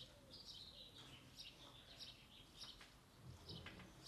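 Near silence with faint birds chirping in the background: many short, high chirps.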